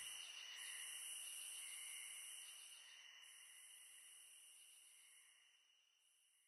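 Near silence: a faint high-pitched hiss fades away over about three seconds, leaving silence.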